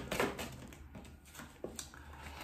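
Tarot cards being handled: a few faint clicks and rustles as a card is drawn off the deck, over quiet room tone.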